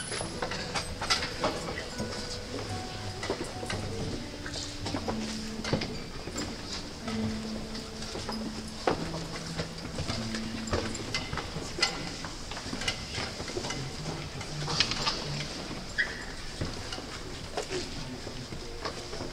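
Classical guitar ensemble playing a soft, slow passage of held notes that move from pitch to pitch, with many scattered clicks and knocks throughout.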